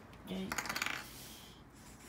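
A brief clatter of a small hard object, a quick run of rapid clicks lasting about half a second, starting about half a second in.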